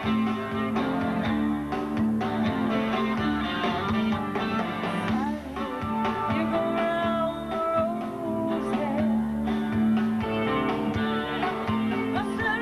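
Live rock band playing an instrumental passage: electric guitars over bass and drums, with gliding, bent guitar notes in the middle.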